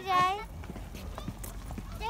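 A child's short, high-pitched vocal call, then light, irregular footsteps tapping on paving.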